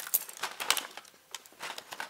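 Clear plastic packaging bag crinkling and rustling as hands handle and open it, in irregular bursts with a short lull about a second in.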